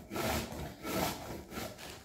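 A piece of courgette grated by hand on a metal grater set over a bowl, in repeated strokes about three a second.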